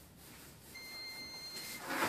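A single steady, high-pitched electronic beep lasting about a second, over a soft rustling that swells into a brief louder rustle at the end.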